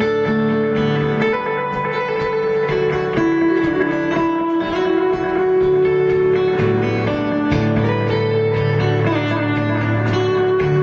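Fingerpicked electric guitar played through a 1776 Effects Multiplex, a tape-echo simulator pedal built on PT2399 delay chips, set to its Space Echo (RE-201) mode, into the clean channel of a Tone King Imperial amp. Notes and chord changes come every second or so, each followed by trailing echoes.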